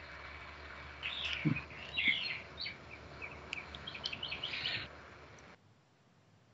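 Birds chirping in the background, heard through a video-call microphone, with a soft low thump about a second and a half in. The sound cuts off abruptly near the end.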